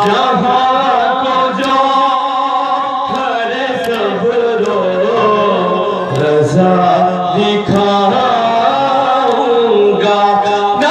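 A man singing an Urdu noha, a Shia mourning lament, into a microphone in long held, wavering notes. Occasional sharp slaps come from mourners beating their chests (matam).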